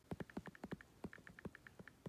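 Fingers typing on a tablet's on-screen keyboard: a quick, uneven run of faint taps and clicks.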